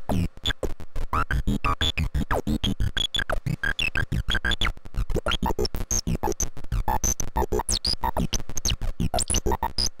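Homemade CMOS synthesizer built around a CD4023 pulse-width-modulation oscillator, sounding as a rapid, uneven train of electronic clicks. Short tones glide and jump between pitches among the clicks, stepped by its pseudo-random generator and capacitor switcher.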